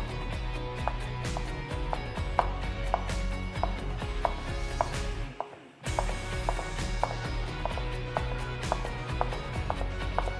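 Chef's knife slicing fresh shiitake mushrooms on a wooden cutting board: a regular run of knife strikes on the board, about one or two a second, with background music underneath. The strikes break off briefly a little past halfway, then carry on.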